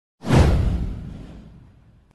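A whoosh sound effect with a deep, heavy low end for a video intro animation. It starts suddenly just after the start, sweeps down in pitch and fades out over about a second and a half.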